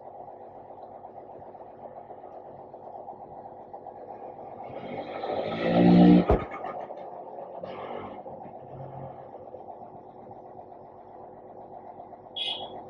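Steady hum of the endoscopy system's air pump, pushing air through the endoscope's air and water channels to check that no water is left at the tip. About five seconds in, a louder burst of a second or so ends in a sharp click.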